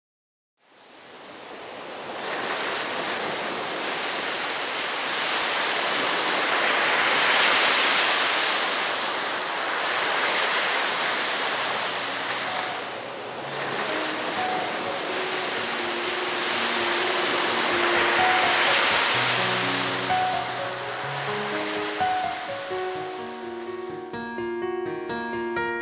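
Ocean surf fading in from silence, rushing and swelling twice as waves break. Soft keyboard music comes in about halfway through and grows louder toward the end.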